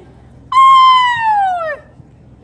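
A woman's high singing voice holding one long note that slides steadily downward and drops off, starting about half a second in and lasting just over a second.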